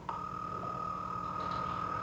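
Telephone ringing tone heard over the line while a call rings through unanswered: one steady, high beep lasting about two seconds.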